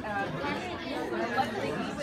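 Indistinct chatter of several people talking at once; the steel tongue drum is not yet being played.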